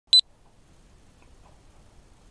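A camera's start-of-recording beep: one short, loud, high electronic beep in two quick pulses right at the start, followed by faint room tone.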